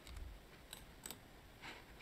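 Near silence, broken by a few faint clicks from a computer keyboard and mouse.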